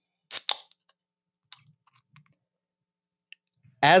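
Aluminium beer can handled close to a desk microphone: two short, sharp clicks in quick succession, then a few faint ticks.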